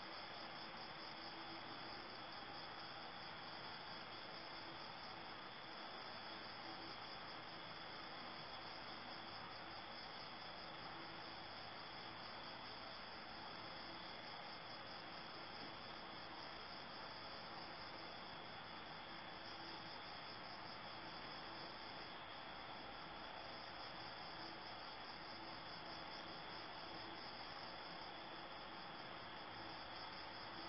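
Crickets chirping steadily, a high even band of sound over a faint constant hiss.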